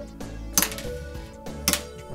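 Two sharp plastic clicks about a second apart: LEGO stud shooters on a model's wing fired one at a time by thumb, each shot launching a small round stud. Background music runs underneath.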